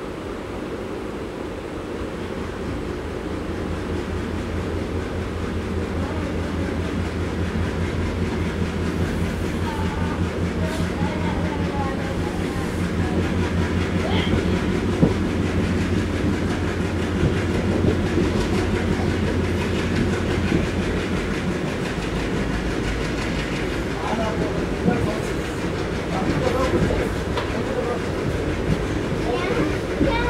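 ALCO WDG3A diesel locomotive's 16-cylinder engine working hard as the train accelerates away from a station, heard from a coach behind it. A steady low drone builds over the first several seconds, over the running noise of the coach wheels on the rails.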